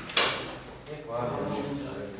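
Chalk on a blackboard: a sharp tap followed by a short scratchy stroke in the first half-second. A voice speaks in the second half.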